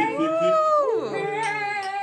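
People's voices calling out in a drawn-out, sing-song way: one long call that rises and then falls in pitch, followed by a steadier held note.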